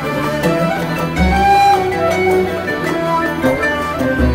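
Instrumental background music with held melody notes over a low bass note that comes in about a second in.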